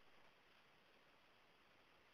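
Near silence: faint steady hiss of the recording's noise floor.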